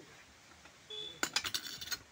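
A quick run of sharp metallic clinks, about a dozen in under a second, starting past the middle: small metal objects such as coins or steel utensils knocking together.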